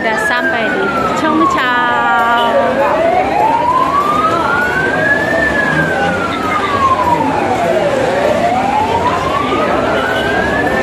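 A siren wailing, its pitch rising and falling slowly about once every five and a half seconds, over crowd chatter.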